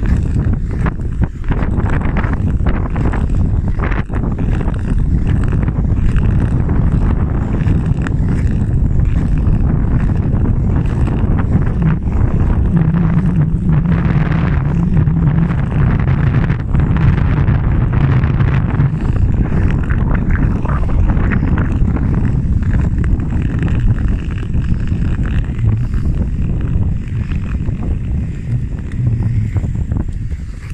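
Steady wind noise on the microphone over the hiss and scrape of ice skate blades gliding and pushing off on clear lake ice, with irregular short scrapes and clicks throughout.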